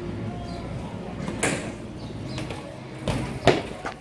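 BMX bike rolling over pavement, then a few sharp knocks and a clatter about three seconds in as the bike comes down in a trick attempt.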